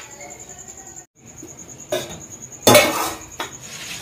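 Stainless steel kitchenware clattering on a stone countertop: a light knock about two seconds in, then a louder clank with a short ring near three seconds. The sounds come as a steel plate lid is taken off a bowl of idli batter and the bowl is set down.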